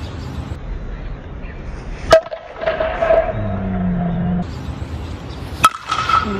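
A two-piece composite USSSA baseball bat hitting pitched balls: two sharp cracks about three and a half seconds apart, each with a brief ring.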